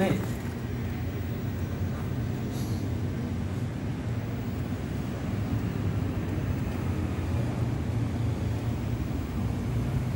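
Steady low rumble of distant traffic, with faint voices in the background.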